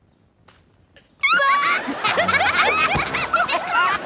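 Quiet for about a second, then a sudden loud burst of laughter from many voices at once.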